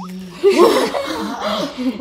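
People laughing loudly, breaking out suddenly about half a second in and going on in bursts.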